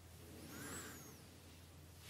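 Near silence: room tone with a faint steady low hum, and a very faint arched, rising-then-falling sound about half a second in.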